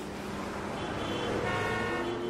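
A steady electronic drone with several held tones coming in about a second in: the sound bed of an animated neon logo end card.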